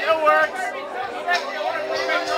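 Voices and chatter in a bar over a karaoke backing track with steady held notes.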